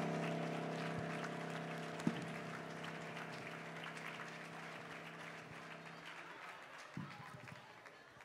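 Final chord of a digital piano held on the sustain and slowly dying away over about six seconds, with faint scattered clapping underneath and a couple of sharp knocks, about two seconds in and near the end.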